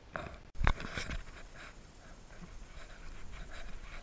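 Water splashing and sloshing in shallow creek water as a catch is handled, with two sharp knocks or splashes about a second in, then quieter irregular dripping and handling.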